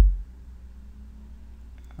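The last electronic kick drum of an Acoustica Studio Drums loop, its low pitch dropping as it dies away within the first quarter second. After that there is only a faint low, steady hum of room tone.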